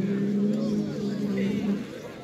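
A bull bellowing while locked head to head with another bull: a long, low, steady moan held for nearly two seconds.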